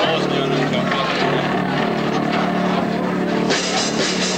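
A band's amplified instrument holding a low droning note over crowd noise and voices. About three and a half seconds in, a rock drum kit with cymbals comes in as a song starts.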